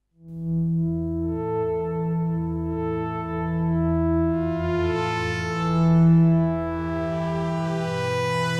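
Ambient synth pad from the FXpansion Strobe 2 synthesizer, played on a ROLI Seaboard RISE with per-note MPE expression: a sustained chord fades in, then grows brighter and swells in level about six seconds in.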